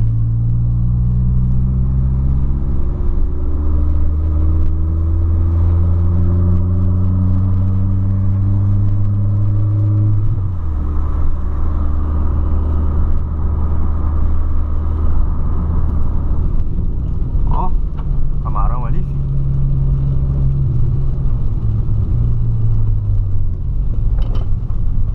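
Volkswagen Polo sedan's engine heard from inside the cabin while driving. It pulls in one gear with its pitch rising slowly for about ten seconds, drops suddenly as the revs fall, then runs on steadily at lower revs.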